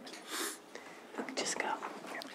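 Faint, low voices, as of someone whispering or speaking away from the microphone, with a short breathy hiss about a third of a second in.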